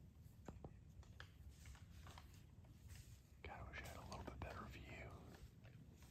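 Faint whispering for about two seconds past the middle, over near silence with a few small scattered clicks.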